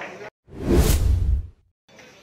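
Whoosh sound effect for an edited scene transition: a single rush of noise with a deep rumble under it, about a second long, set between stretches of dead silence.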